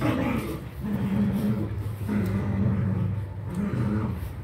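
Dalmatian puppies crowding together and making low vocal sounds, over a steady low hum.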